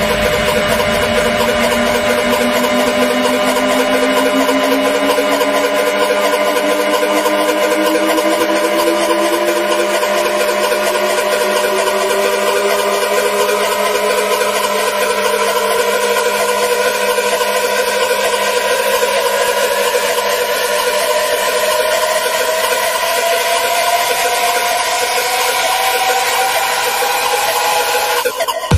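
Electronic dance music breakdown without a beat: a held synth chord and drone, over which a single synth tone rises slowly and steadily in pitch, a riser building toward the drop.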